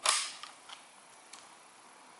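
A single sharp bang from a rifle right at the start, dying away over about half a second, followed by a few faint clicks.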